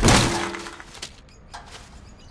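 Galvanized metal trash can lid knocked off with a loud crash and a short metallic ring, followed by a couple of lighter clanks as it lands.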